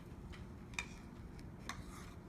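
A few faint clicks and light scratches from a black marker's tip on a cardboard cereal box as a circle is drawn.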